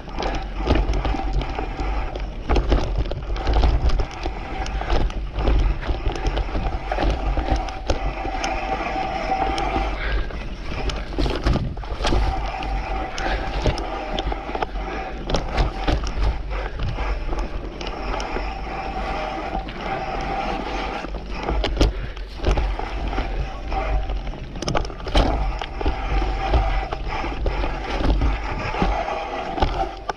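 Mountain bike ridden along a dirt woodland singletrack, heard from a camera on the bike: tyres rolling over dirt and roots, with frequent knocks and rattles from the bike and deep wind rumble on the microphone. A steady mid-pitched whir comes and goes in several stretches.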